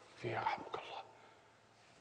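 A man's voice saying one short, soft word, then about a second of near silence.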